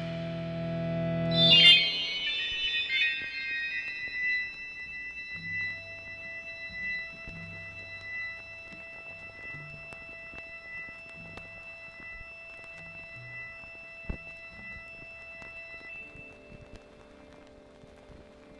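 Late-1960s psychedelic rock instrumental: a held organ chord stops about a second and a half in, then a sudden bright chord rings on and slowly fades over soft, slow low notes.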